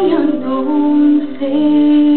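A girl singing a slow Celtic lullaby in long held notes, the pitch moving to a new note about one and a half seconds in.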